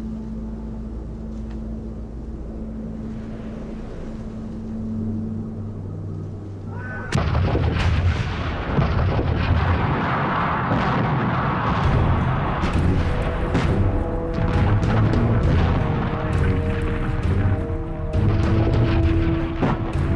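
A low, steady drone, then about seven seconds in a sudden, loud, continuous artillery barrage: many field guns firing in a rolling mass of overlapping shots, with sustained music tones underneath.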